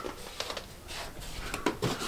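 Soft footsteps of a child in slippers walking along a wooden hallway floor: a few faint, light steps, more of them near the end.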